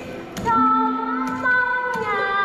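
A young woman's ca trù singing (hát nói): after a short pause, about half a second in, she holds a long, wavering, ornamented sung note. Sharp clacks of the singer's phách bamboo clappers come just before her note and again near the end.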